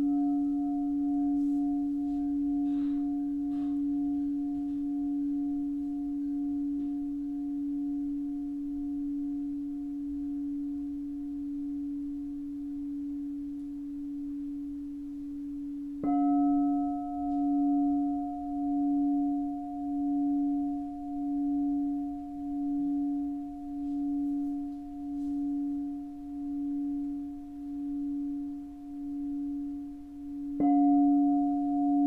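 Quartz crystal singing bowl ringing with one long, steady, low tone. It is struck afresh about halfway through, and the new ring pulses with a slow wobble as it fades.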